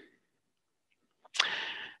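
Near silence, then about two-thirds of the way in a short, sharp intake of breath: a hissing inhale that fades before speech resumes.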